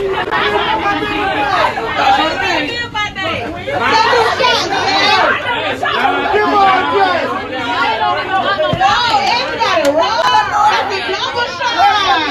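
Crowd chatter: many people talking loudly over one another at once, with no single voice standing out.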